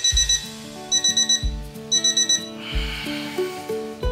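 Alarm clock beeping in three short bursts of rapid high beeps, about a second apart, over background music with a steady bass beat.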